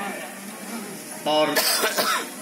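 A man gives a short cough into a stage microphone past the middle, heard through the PA system after the last sung note fades.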